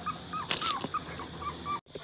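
Young Labrador retriever puppies whimpering: a string of short, high squeaks, several a second, that cuts off suddenly near the end.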